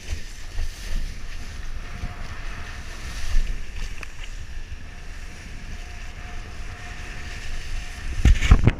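Wind buffeting a camera microphone with water hissing and splashing under a kiteboard at speed, a steady rushing rumble. A faint thin whine comes and goes in the middle.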